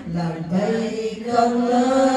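A group of voices chanting an Arabic devotional chant in unison, with long held notes and a brief break in the line about a second in.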